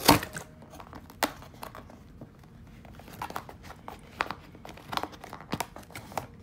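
Cardboard toy packaging being handled and opened by hand: scattered rustles, scrapes and sharp clicks of fingers working at the box and its plastic fasteners. The loudest click comes at the very start, another about a second in, and more cluster in the second half.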